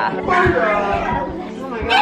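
Several people talking over one another at once: lively chatter.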